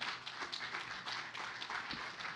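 Audience clapping.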